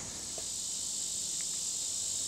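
Outdoor insects chirring in a steady, high-pitched drone.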